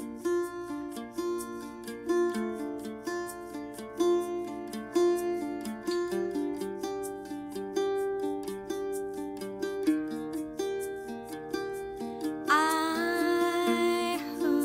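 Live acoustic band music: an octave mandolin picks a steady, evenly repeated figure of notes with guitar behind it. A woman's singing voice comes in near the end.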